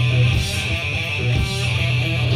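Live rock band playing loud, with electric guitars strumming chords over held low notes.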